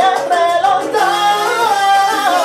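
Live salsa band playing, with a singer's voice carrying the melody over the band's steady rhythm.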